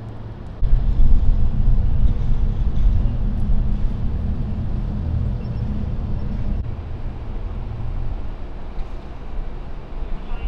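Low rumble of a motor vehicle running nearby, loud from about half a second in and easing after about six and a half seconds.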